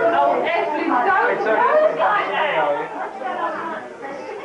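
Several people talking at once, overlapping and indistinct.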